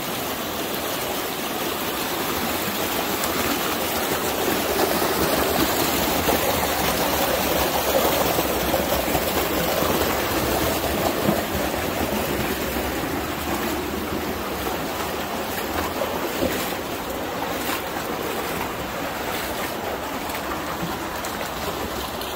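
Creek water rushing steadily down a small cascade over sandstone boulders, with faint splashes now and then as the hiker wades through the stream.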